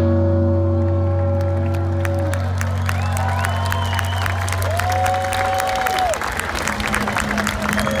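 A live rock band's final held chord and low bass note ringing out and fading. Crowd applause and cheering take over in the second half.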